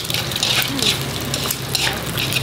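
Food sizzling and crackling in a hot oiled wok while being stirred with chopsticks, a steady frying hiss with irregular spits.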